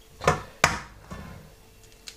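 An egg struck twice against the rim of a stainless steel mixing bowl to crack it: two sharp knocks about a third of a second apart, the second ringing briefly.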